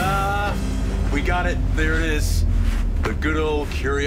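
Steady low rumble of a crewed Mars rover driving, heard from inside the cabin, with voices over it in short bursts.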